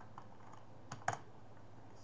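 Typing on a computer keyboard: a few light key taps, then two sharper keystrokes about a second in as the last letter and the Enter key are pressed.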